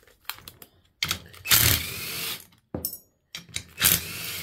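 Metal tools and turbocharger parts being handled on a steel workbench: scattered metallic clicks and clatter, with a louder scraping rustle about a second and a half in.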